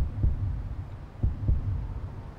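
Heartbeat sound effect: low double thuds, lub-dub, that start suddenly and come twice, about a second and a quarter apart, over a low hum.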